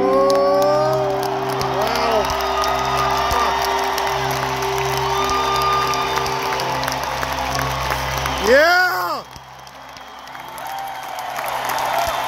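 Arena concert's closing synth chords held while the crowd cheers and whoops. A loud whoop rings out close by about eight and a half seconds in as the music cuts off, and cheering and applause then swell toward the end.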